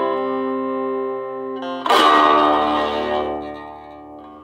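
Electric guitar (an old Stratocaster) played through a 1980s Peavey Decade 10-watt 1x8" combo amp with a Celestion speaker: a chord is left ringing, then a new chord is strummed about two seconds in and rings out, fading near the end. A steady low mains hum sits underneath.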